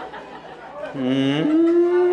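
A man's voice holding one long drawn-out vocal call, not words: it starts low about a second in, jumps up in pitch half a second later and is held steady to the end.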